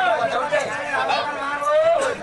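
A performer's voice in sung storytelling, drawing out long held notes that glide in pitch, with a held note near the end.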